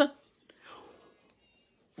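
A man's speech breaks off, leaving a pause of near silence. Just under a second in there is a faint, soft breath.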